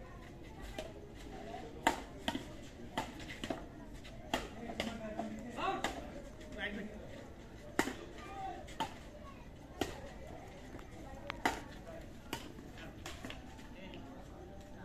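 Badminton rackets striking a shuttlecock in a rally: a sharp hit every second or so, the loudest about two seconds in, over background chatter of onlookers.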